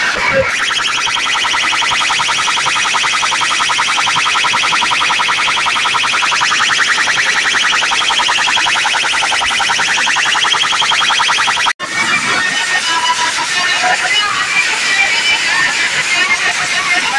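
Very loud DJ sound-system music blaring over a street crowd, with a fast, dense, high-pitched repeating pattern. The sound cuts out for an instant near the end, then returns busier, with voices mixed in.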